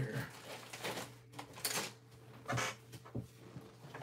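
Rummaging through a pile of knives and other hard objects: a few scattered clicks and knocks as things are moved and set down.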